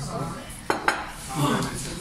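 Ceramic plates, bowls and cutlery clinking on a table as dishes are set down, with two sharp clinks a little under a second in.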